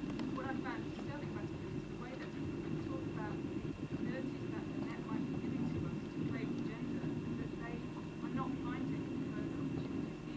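Indistinct murmur of many audience members talking at once, short overlapping fragments of voices over a steady low room hum, with a faint steady high whine.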